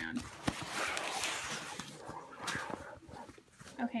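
Fabric diaper backpack being turned and handled: rustling and scraping of the cloth, with crinkling of packing paper and a sharp click about half a second in.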